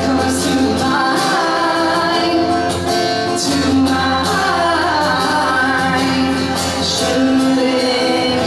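Live acoustic pop song: acoustic guitar playing under male and female voices singing.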